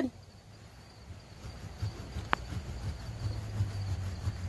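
A small pumpkin-carving saw sawing through a pumpkin's rind around the stem to cut the lid. It makes a soft, irregular rasping that grows a little louder from about a second and a half in, with one sharp click a little past halfway.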